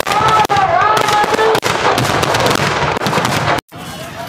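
Aerial fireworks going off in a dense, rapid crackle of bangs and pops, continuous for about three and a half seconds, then cutting off suddenly.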